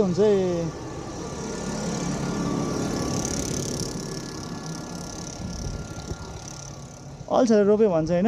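A motor vehicle passing on the road, its engine and tyre noise swelling over about three seconds and then fading away.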